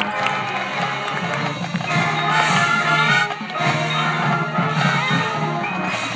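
Marching band playing sustained full chords over steady low notes, swelling a little louder about two seconds in.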